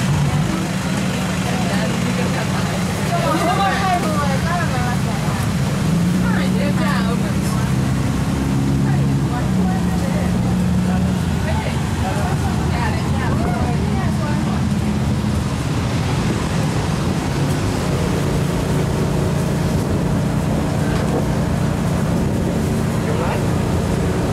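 Engine of an open-sided park tour bus running as it drives, a steady low drone whose pitch shifts up and down a few times. Voices of passengers are heard over it now and then.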